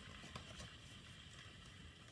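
Near silence: room tone, with one faint click about a third of a second in.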